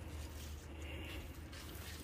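Quiet background: a steady low hum with faint hiss, and no distinct events.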